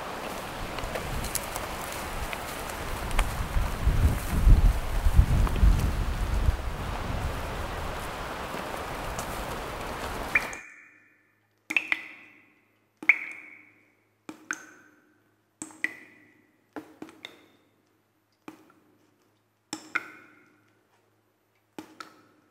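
Outdoor background hiss with low rumbling and thuds of movement for about ten seconds. Then an abrupt change to a sparse run of single bell-like chime notes, about one a second, with one quick double note.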